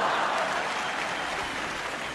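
Audience applause after a comedy punchline, dying away gradually.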